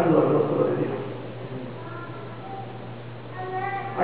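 Voices: a loud man's voice through the microphone for about the first second, then a softer, higher-pitched voice in the last couple of seconds, over a steady low hum.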